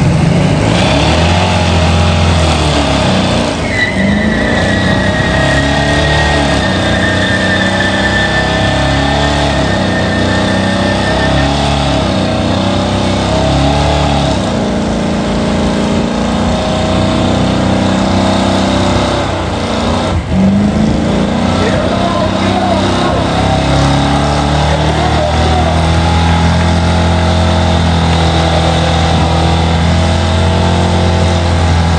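Square-body Chevrolet C10 pickup doing a burnout: the engine is revved hard and held at high rpm, its pitch stepping up and down as the rear tyres spin on the pavement. A thin high tone runs for several seconds from about four seconds in.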